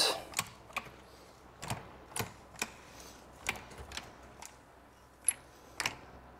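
About ten short, sharp clicks at uneven intervals from a sausage-type caulking gun being pumped to lay beads of sealant.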